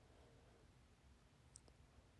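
Near silence: room tone, with one faint, short click about one and a half seconds in.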